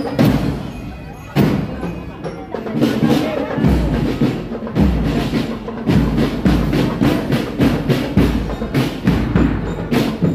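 Marching drum band playing a fast, steady drum rhythm. The heavy strokes of large bass drums come in strongly about four seconds in.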